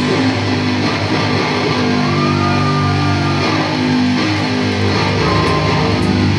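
Live heavy metal band: distorted electric guitar and bass guitar play held low chords that change about once a second, with the drums mostly dropping back until cymbal crashes return just after.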